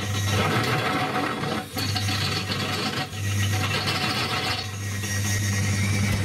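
Homemade drill press driven by a washing-machine motor, a step drill bit cutting into steel rectangular tube: a steady motor hum under a rasping cutting noise that eases briefly twice, a little under two and about three seconds in. The bit is one the owner calls not very sharp.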